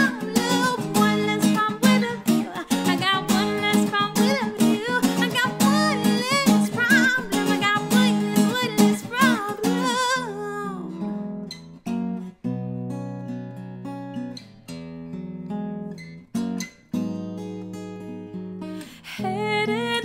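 Acoustic-electric guitar strummed briskly with a woman singing over it. About halfway through, the strumming gives way to softer, held chords with a couple of short breaks, and it picks up again near the end.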